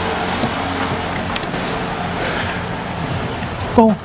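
Steady arcade din with music playing, around a claw machine being worked, with no clear separate claw or motor sound standing out.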